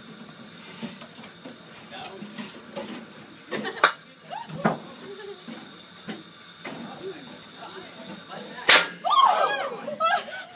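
A lump of sodium fizzing on water in a glass beaker as it gives off hydrogen, with a couple of small pops. Near the end it goes off in one sharp, loud bang that throws water out of the beaker, and voices exclaim right after.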